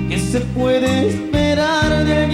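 A grupera band playing live: drums, electric bass and electric guitar with keyboards, and a held melody line over a bass part that changes note about every half second.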